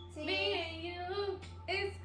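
A woman singing a line of a song unaccompanied, holding long wavering notes, with a short break before the next phrase starts near the end.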